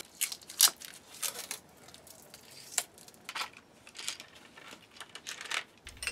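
Kit parts being handled by gloved hands: irregular crinkling and rustling of plastic bags with light clicks and taps of small metal and plastic parts.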